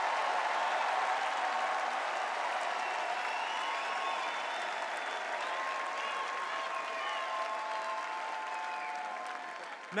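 A large convention crowd applauding, a dense steady clatter of clapping that slowly dies down toward the end.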